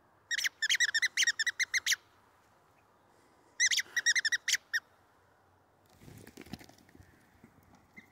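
A rubber squeaky toy ball squeezed rapidly in two runs of high squeaks: about ten in the first, and about eight more a couple of seconds later.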